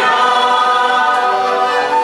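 Two women singing a Christian hymn in harmony on long held notes, accompanied by accordions and a flute.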